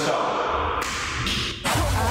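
A show-transition sound effect: a noisy swish that drops out for a moment, then bass-heavy intro music comes in near the end.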